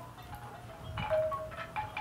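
Soft ringing tones at several different pitches sound one after another, each held up to about half a second, with a faint rustle about a second in.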